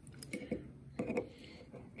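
A few light metal clicks and taps as snap-ring pliers tips are set into the eyes of a steel retaining ring on a gear hub.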